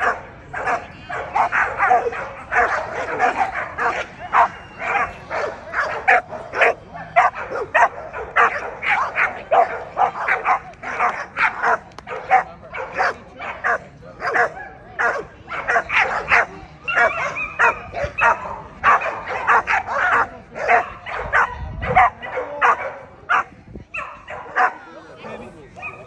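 A dog barking over and over, two to three short barks a second, with no let-up.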